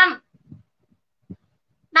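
A voice finishing a word, then a pause in speech with two faint, short low thumps, before talking resumes at the very end.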